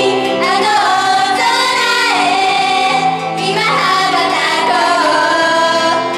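Girl idol group singing a J-pop song live into microphones over a recorded backing track, amplified through the stage PA.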